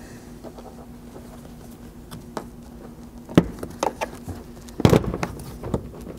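Plastic trim clips snapping free as an SUV's rear pillar trim panel is pried and pulled away from the body: a few sharp snaps, the loudest about three and a half and five seconds in, over a steady low hum.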